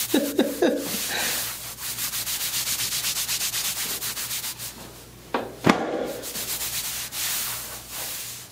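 Hands rubbing briskly back and forth over a T-shirt on a person's back: a fast, even swishing of several strokes a second that eases off briefly past the middle. Two sharp thumps come about five and a half seconds in, the second the loudest.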